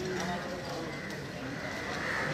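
Street ambience: indistinct voices of people talking over a steady din of city noise.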